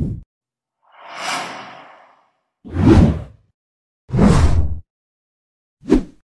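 A string of whoosh sound effects: about five separate swishes, roughly a second apart. The two in the middle are the loudest and fullest.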